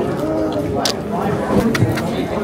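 Indistinct voices of people talking in a busy indoor hall, with two short sharp clicks, about a second in and near the end.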